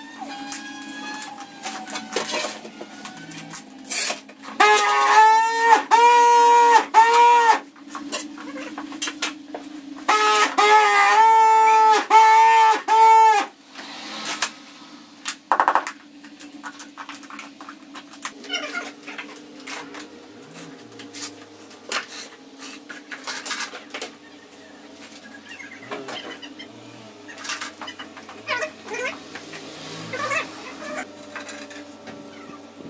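Scattered clicks and light knocks of tiling work: plastic tile-levelling clips and hand tools handled on a tiled floor. Twice, at about five and eleven seconds in, a loud high-pitched voice-like call of several wavering notes sounds over the work for about three seconds each time.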